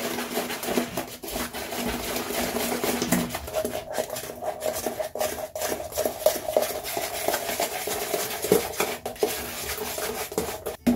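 A plastic rat-tail comb stirring bleach powder and peroxide developer into a lightener paste in a plastic tub: a continuous, irregular run of quick scraping clicks as the comb rubs and knocks against the tub's sides.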